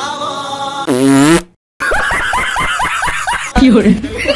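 A loud fart noise about a second in, about half a second long with a wavering low pitch. After a brief silence comes a quick run of short pitched chirps, then another low blurt near the end.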